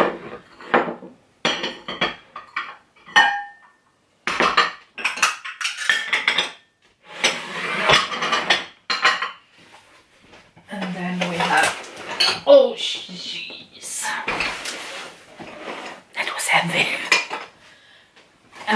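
Glass dishes and bowls clinking and knocking as they are handled and set down among other glassware on a wooden table, with one brief ringing clink about three seconds in. Later, denser rummaging and handling sounds as she reaches into a cardboard box of items.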